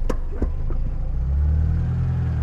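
Car engine running with a steady low rumble that grows a little louder about one and a half seconds in, with two short knocks in the first half second.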